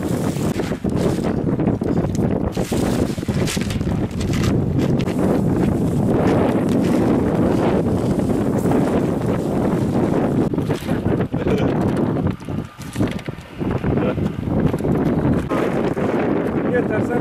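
Wind buffeting the microphone: a dense, low rumble that rises and falls with the gusts and eases off briefly about twelve seconds in.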